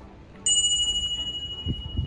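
A single bright bell ding, the notification-bell sound effect of a subscribe-button animation. It strikes about half a second in and rings out over the next second and a half.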